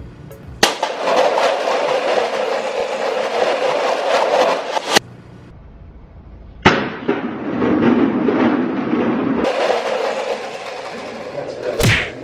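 A tall tower of stacked plastic cups collapsing, many hollow plastic cups clattering onto a tile floor. There are two long bursts of clatter, each starting suddenly, with a short quieter gap between them.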